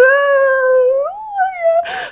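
A woman's voice mimicking a whiny, tearful child: one long whimpering whine held steady, then rising and wavering, with a short breathy sound near the end.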